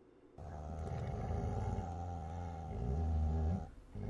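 A low beast growl added as a sound effect, starting suddenly about half a second in and lasting about three seconds with slowly wavering pitch before it fades out.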